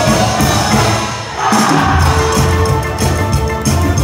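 A high school wind band playing live, with brass and saxophones over drums. The music dips briefly a little over a second in, then comes back at full strength.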